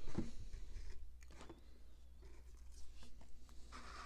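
Faint handling of Pokémon trading cards: a few light taps and short slides as the cards are moved and set in place, over a low steady hum.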